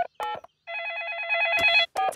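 Cartoon telephone: two short keypad beeps as a number is dialled, then a single trilling ring lasting about a second.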